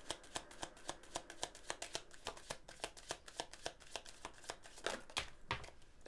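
A deck of tarot cards being shuffled by hand: a quick, even run of card-on-card clicks, about five a second, with a couple of stronger flaps about five seconds in.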